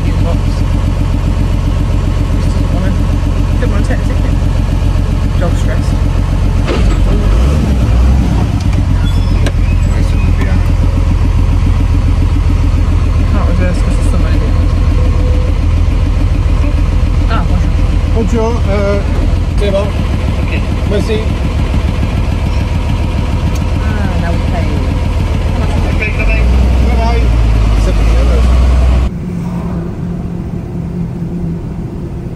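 Truck engine idling, heard from inside the cab, with louder low rumble about seven seconds in and again for a few seconds near the end. Just before the end it cuts to quieter, steady running noise.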